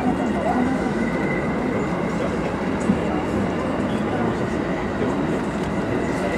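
E531 series electric train running, heard from inside the passenger car: a steady rumble of wheels on rails and running noise, with a faint steady high whine.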